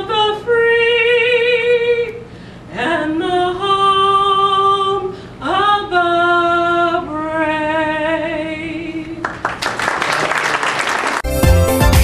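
Singing in long held notes, each sliding up into the note and wavering, in short phrases with breaks between. Near the end the singing gives way to a couple of seconds of noise, then music with a steady beat starts.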